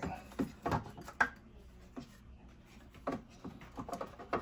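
A cover being handled and worked into place on a refrigerator's ice maker: a handful of irregular light clicks and knocks, the loudest about a second in.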